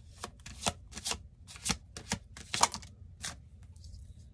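Tarot deck being shuffled by hand: a string of irregular crisp card slaps and riffles, the loudest about two and a half seconds in, that stops a little after three seconds.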